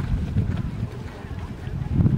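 Wind buffeting the microphone outdoors: an uneven, gusting low rumble.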